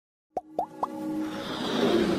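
Intro sound design: three quick rising pops about a quarter second apart, followed by an electronic swell that builds steadily in loudness.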